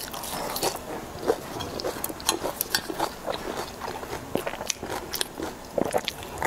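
Close-miked eating of fried vegetables: crunchy bites and chewing, heard as a quick, irregular run of crisp crunches and clicks.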